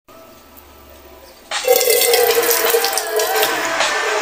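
Faint room noise, then about a second and a half in a sudden splash of water poured over a person's head and running down her face, with a song starting at the same moment.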